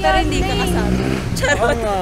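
People talking over the steady low rumble of a motor vehicle's engine.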